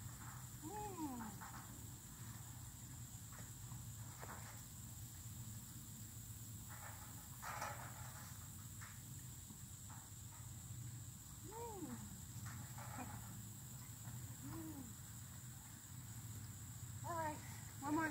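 Horses being hand-fed treats at a gate, heard quietly over a steady low hum: a few short noises of handling and eating between about three and nine seconds in. Brief falling voice sounds come about a second in, twice more later, and again just before the end.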